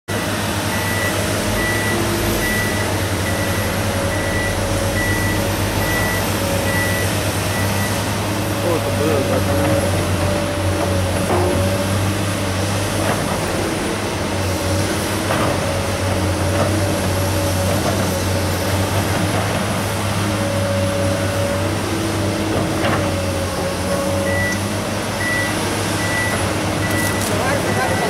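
Diesel engine of a tracked hydraulic excavator running steadily under load as it digs coal, with a few scattered clunks. A repeating electronic warning beep, about one and a half beeps a second, sounds for the first several seconds and again near the end.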